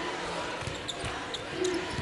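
Basketball being dribbled on a hardwood court, with a few short knocks over the steady murmur of an arena crowd.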